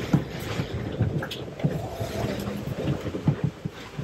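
Strong gale-force wind blowing over a sailboat, heard from inside the cabin, with irregular knocks and rattles from the hull and fittings.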